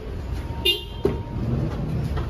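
Low rumble of a vehicle engine running, with a brief horn toot about two-thirds of a second in and a sharp click just after.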